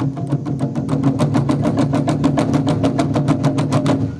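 Taiko drums beaten in a fast, even roll of about ten strokes a second, the drumheads ringing low underneath and the roll slowly growing louder.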